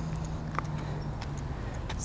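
Bicycle rolling slowly through a tight turn on pavement: a low rumble with a faint steady hum and light, scattered ticking.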